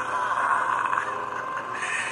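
Cartoon panther's drawn-out growl, one continuous rough, pitched call.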